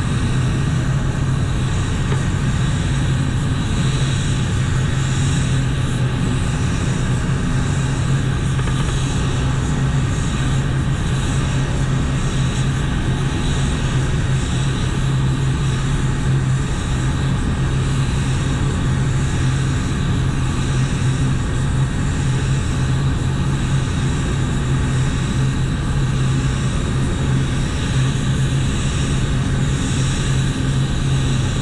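Steady noise of a paint spray booth's ventilation with a low hum, and the hiss of a gravity-feed compressed-air spray gun spraying base coat.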